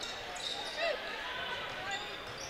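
Basketball being dribbled on a hardwood gym court, under a steady murmur of the gym crowd and faint voices.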